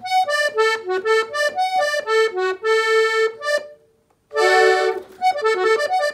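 Farinetti piano accordion played on the right-hand keys: a quick run of short notes in inverted chords, the norteño-style ornament figure (adorno) of the melody. The notes break off for a moment about two-thirds of the way through, then a loud full chord sounds, followed by a few more quick notes.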